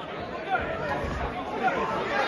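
Ringside crowd chatter: several voices talking at once, with no single voice standing out.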